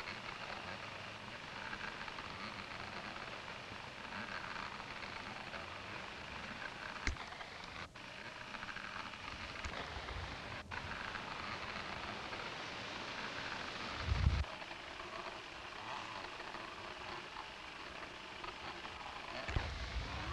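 Steady crackling hiss of an old sound-on-film track carrying faint open-air ambience, with a short click about seven seconds in and a low thump about fourteen seconds in.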